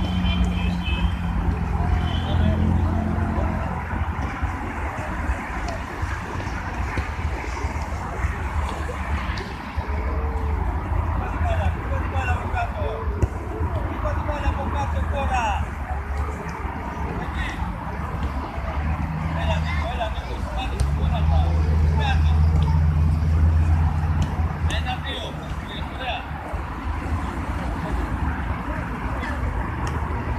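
Steady traffic rumble from a nearby road, with a vehicle engine swelling louder for a few seconds past the middle and then fading. Distant children's voices and occasional sharp thuds of footballs being kicked sit over it.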